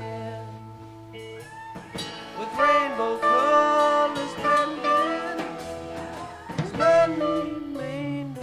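Live rock band music from a soundboard recording: a lead guitar line with bent, gliding notes over a bass line, loudest in the middle of the passage.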